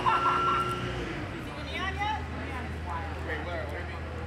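Voices calling out across an open street, heard at a distance over a low steady hum, with a held tone during the first second.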